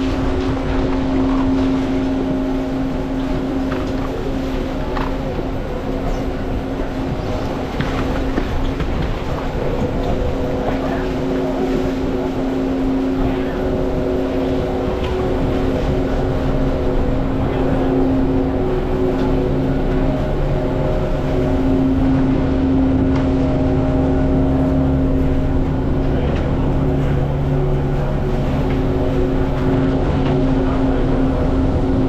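Chairlift terminal machinery humming steadily, a droning tone, with scattered clicks and clatter from skis and poles.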